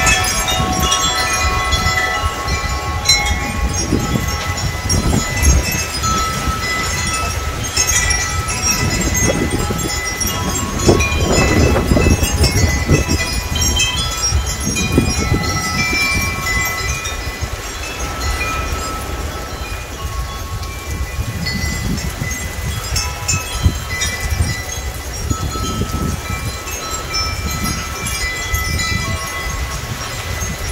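Wind chimes ringing continuously in the wind, many overlapping tones sounding at once, over a low uneven rumbling that swells about a third of the way in.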